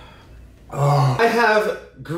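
A man's voice, wordless: about a third of the way in a low throaty sound, going straight into a drawn-out vocal sound whose pitch rises and falls, ending shortly before the end.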